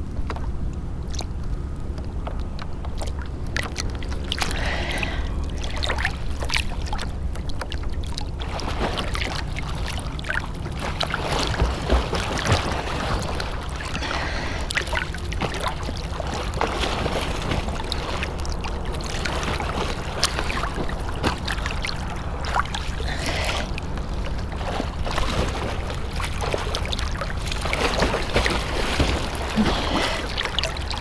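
Choppy lake water lapping and sloshing against a camera held at the water's surface, with irregular small splashes and a steady low rumble of wind on the microphone.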